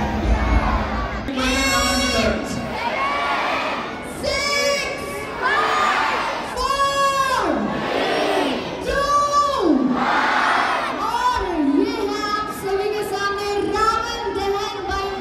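Large crowd shouting and cheering, with loud drawn-out calls repeating every two to three seconds, each sliding down in pitch at its end.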